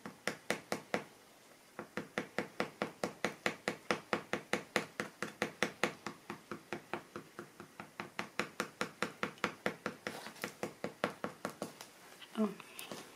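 A piece of plastic credit card dabbed over and over onto wet acrylic paint on paper: a quick, even run of soft taps, about four or five a second, with a short pause about a second in.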